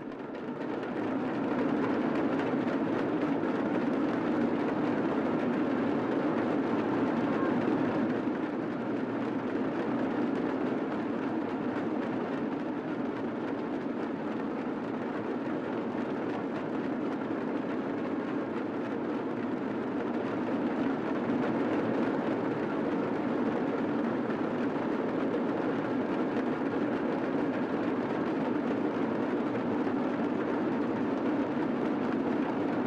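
A group of large hand-held drums played together in a continuous, dense roll, steady in level throughout.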